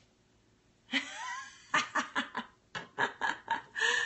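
A woman laughing. About a second in comes one voiced sound that rises and falls in pitch, then a run of quick, breathy laughs, about four a second.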